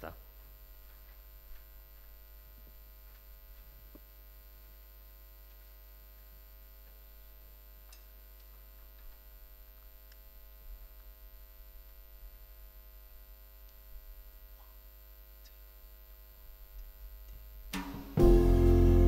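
Faint, steady electrical mains hum from the stage sound system, with a few soft scattered clicks and knocks.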